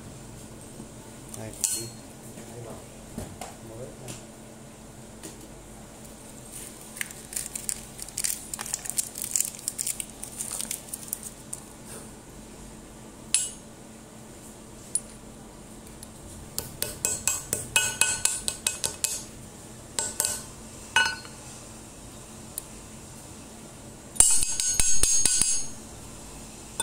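Small metal angle-grinder parts, a ball bearing and its metal bearing housing plate, clicking and clinking as they are handled and fitted by hand against a steel plate. The clicks come in scattered bunches, with a louder, dense metallic rattle lasting about a second near the end.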